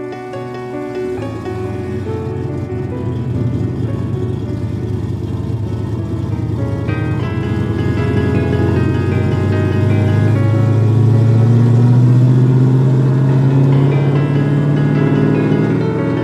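A car engine running over background music, its low note climbing slowly through the second half as the car gathers speed.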